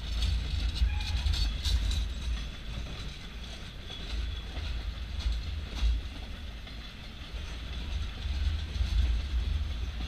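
Freight train of empty log flatcars rolling steadily past with a low rumble and wheel clatter. A few sharp metallic clanks come about a second in and again just before the six-second mark.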